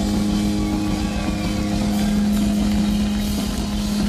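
Live rock band holding one long, steady, droning distorted note, loud and unbroken.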